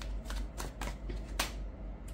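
A deck of tarot cards being handled, a card slid off the deck, with a few crisp snaps of card on card, the sharpest just before the end.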